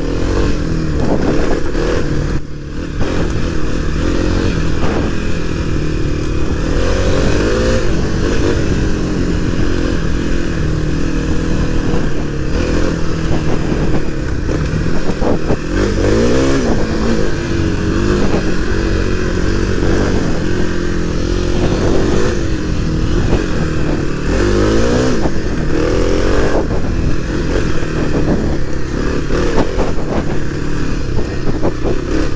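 2023 Kawasaki KLX300's single-cylinder four-stroke engine running steadily while riding a dirt trail, its revs climbing and easing with the throttle, with about three clear rises in pitch.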